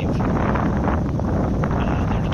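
Wind buffeting the microphone: a steady low rumble with a hiss above it.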